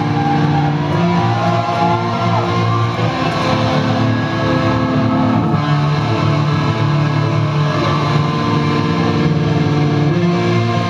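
Black metal band playing live: loud distorted electric guitars over bass and drums, with held chords and a bending lead line, recorded from within the crowd in a concert hall.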